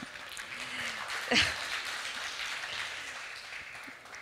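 Audience applauding, thinning out toward the end, with a brief voice about a second in.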